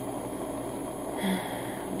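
Handheld butane torch burning steadily with a hiss as it heats the banger of a dab rig. A brief soft breathy sound comes a little past a second in.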